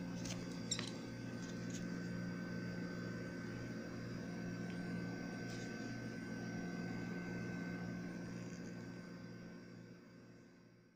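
Steady background hum with a thin high tone above it and a few faint high squeaks or clicks in the first second, fading out near the end.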